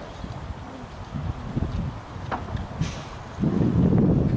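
Wind rumbling on the microphone, growing louder about three and a half seconds in, with a few brief faint clicks a little before.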